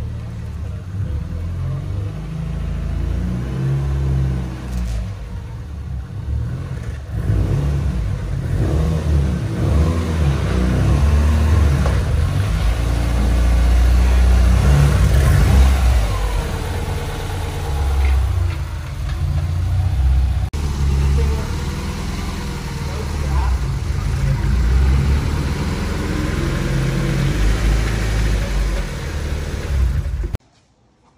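Subaru Forester XT's turbocharged flat-four engine running as the car is driven onto a chassis dyno. Its level rises and falls, loudest about halfway through.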